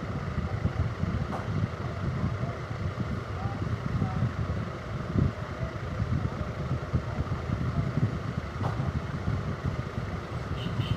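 An uneven low rumble of background noise, with faint voices in the distance.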